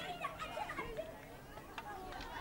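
Several girls' voices calling and shouting to one another across an outdoor hockey pitch during play.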